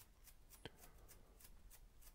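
Very faint, quick scratchy strokes of a paintbrush on canvas, about six a second, with one small click about two-thirds of a second in.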